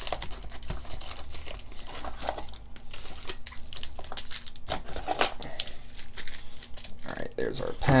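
Foil Pokémon booster packs and plastic packaging crinkling and rustling as they are handled and lifted out of a cardboard box, with irregular light clicks and taps.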